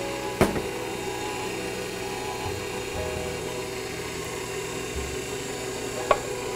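A six-quart stand mixer running steadily on low speed, beating cake batter with its paddle as milk and flour are added. There is a single sharp knock about half a second in.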